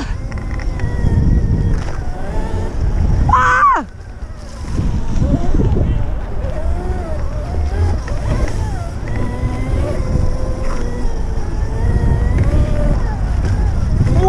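Electric dirt bike being ridden around a pump track: heavy wind rumble on the handlebar camera's microphone, with the motor's faint whine rising and falling as the speed changes. A brief falling pitch about three and a half seconds in is followed by a short lull.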